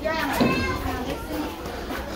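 Young people's voices chattering and calling, fainter than a close voice, with a low rumble underneath.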